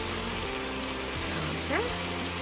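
Background music with long held notes over the faint sizzle of spinach and tofu sautéing in a pan while a spatula stirs it. A short spoken "okay" comes near the end.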